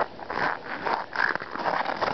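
Footsteps crunching in snow, an uneven crunch about every half second.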